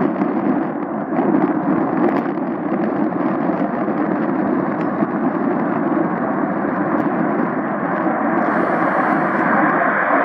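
McDonnell Douglas CF-18 Hornet's twin jet engines at takeoff power during the takeoff roll: a loud, crackling jet noise that grows louder and brighter over the last few seconds as the fighter comes past.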